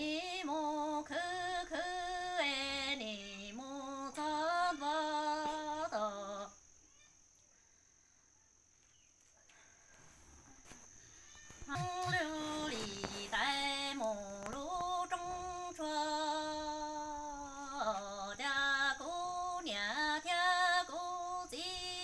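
A woman singing Hmong kwv txhiaj, a sad orphan's lament, unaccompanied: long held phrases with a wavering, sliding melody. The voice breaks off for about five seconds partway through, then resumes.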